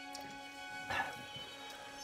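Horror film score holding a steady drone of sustained tones, with one short, sharper sound about a second in.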